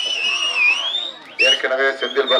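Crowd whistling at a rally: several shrill whistles overlap, rising and falling in pitch. A man's voice comes in over a loudspeaker about a second and a half in.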